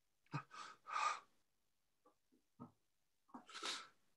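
A man's heavy, distressed breathing and sighs: two long breaths in the first second and a half, a few faint small sounds in the middle, and another heavy breath near the end. This is acted anguish.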